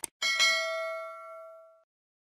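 A short mouse-click sound effect, then a single bright bell ding that rings out and fades over about a second and a half: the notification-bell sound of a subscribe animation.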